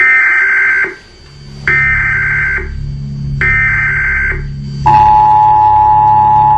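Emergency Alert System broadcast tones: three separate bursts of high, warbling data screech, about a second each, followed near the five-second mark by the steady two-tone attention signal, with a low steady hum underneath.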